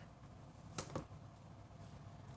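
Two soft clicks close together a little under a second in, from handling tarot cards, against a quiet room.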